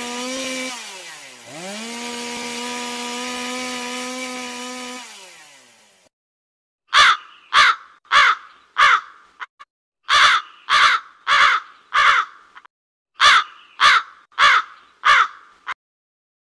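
Chainsaw engine running steadily, its pitch dipping sharply and recovering about a second and a half in, then dropping and fading out by about six seconds. Then a crow cawing loudly in three runs of four caws.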